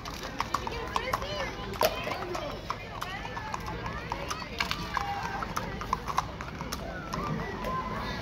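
A horse's hooves clip-clopping on an asphalt street as it walks past: a run of sharp, irregular clicks, with people's voices around.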